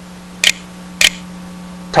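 Two sharp computer mouse clicks about half a second apart, pressing keys on an on-screen keyboard, over a low steady hum.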